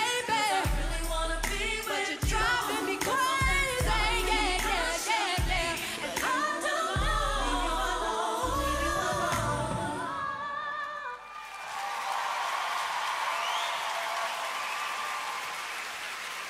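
A woman sings the last lines of an R&B song over backing music with a pulsing bass. The music ends about eleven seconds in, and the audience cheers and applauds.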